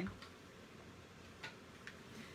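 A few faint, short clicks, about three, from the wooden sign and hands being handled on the tabletop, over quiet room tone.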